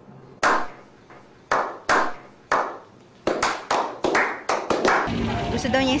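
A slow clap: single hand claps about a second apart that speed up into quicker claps, each ringing out with a short echo.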